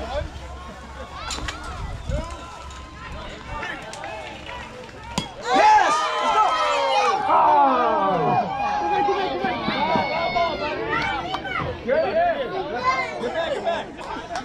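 A bat hits a baseball with a sharp crack about five seconds in. Many spectators at once break into overlapping shouting and cheering that lasts several seconds and then eases off.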